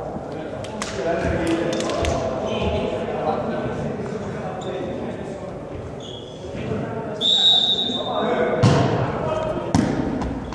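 Volleyball between rallies in an echoing sports hall: players' voices, then a referee's whistle blast about seven seconds in to authorise the serve. A thud of the ball on the floor follows, then the sharp slap of a jump serve near the end.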